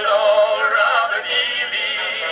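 Edison Blue Amberol cylinder playing on an Edison cylinder phonograph: an early acoustic recording of a male vocal duo singing with vibrato. The sound is thin, with almost no low end.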